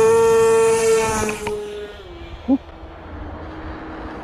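The twin electric motors and propellers of an AtomRC Swordfish RC plane run at full throttle for a hand launch, a loud steady whine. About a second and a half in, the whine drops in pitch and fades to a lower, quieter drone as the plane flies off.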